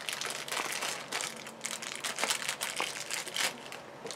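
Plastic packaging crinkling in irregular bursts as hands handle a just-opened blind-bag toy and its wrapper.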